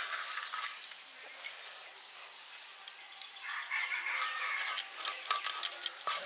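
Bird chirping outdoors: a quick run of short, high rising chirps at the start and another call a little after the middle. Near the end come sharp clicks and scrapes as a snakehead fish is cut and scaled on an upright bonti blade.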